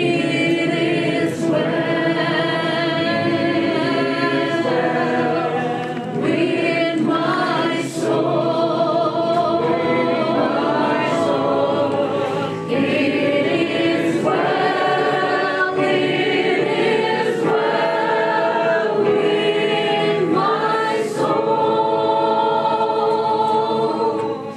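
A woman singing a gospel song, with a full choir-like sound of voices together; long held notes, broken by short breaths between phrases.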